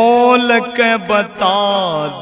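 Male voice singing a Haryanvi devotional bhajan in long, bending melodic phrases over a steady held drone.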